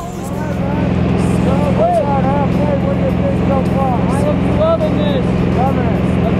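Steady drone of a light aircraft's engine and propeller heard inside the cabin, with a man's voice talking loudly over it.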